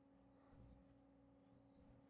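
Marker tip squeaking on a glass lightboard as circles are drawn: two short, high squeaks, about half a second in and again near the end, over a faint steady hum.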